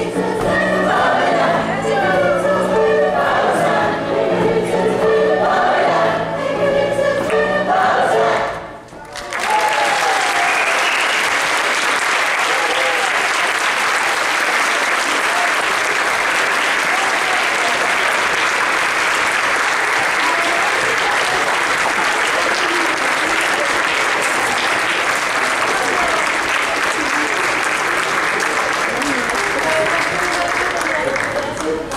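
A choir singing the closing bars of a Venezuelan calypso, stopping about nine seconds in, followed by long, steady audience applause.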